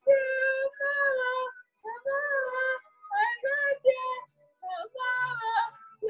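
A young woman singing solo and unaccompanied in a high voice: about eight short sung phrases with brief silent pauses between them.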